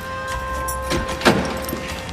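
Background score: a sustained held chord, with a brief sound just over a second in.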